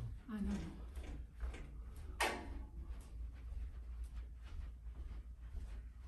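A tall metal-framed shelving unit is carried and set down, with one sharp metallic knock about two seconds in and a few lighter clicks after it. A steady low hum runs underneath.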